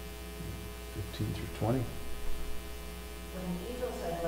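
Steady low electrical mains hum, with faint speech underneath it.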